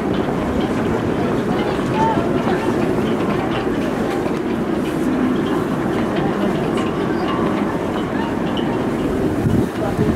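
Stadium crowd noise: a steady din of many spectators' voices, with a few single shouts standing out.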